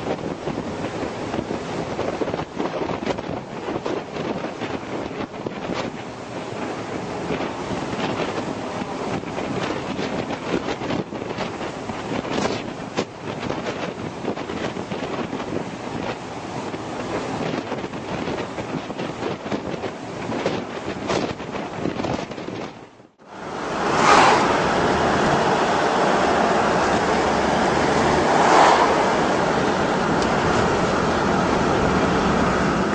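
Wind buffeting the microphone on a boat at sea, with the rush of the water, in uneven gusts. About 23 seconds in it cuts off sharply, and the steady road and engine noise of a moving car takes over, swelling twice.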